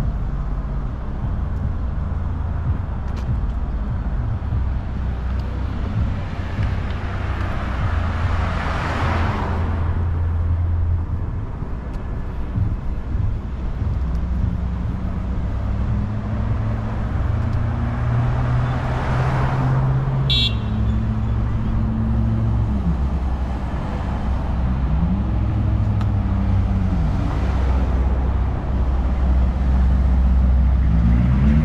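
Road traffic passing close by: a steady low rumble of engines, with two vehicles swelling past and fading away about nine and nineteen seconds in. A brief high chirp comes just after the second pass, and engine notes rise and fall near the end.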